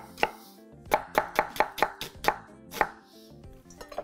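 Knife chopping onion and root vegetables on a wooden cutting board: about a dozen quick, irregular strokes.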